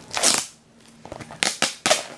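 Plastic DVD packaging being handled and crinkling, in short noisy bursts: a brief rustle near the start, then several sharp crackles in the second half.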